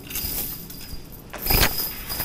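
Metal lifting chains rattling and scraping on concrete as submersible sump pumps are set down, with one loud metallic knock about one and a half seconds in.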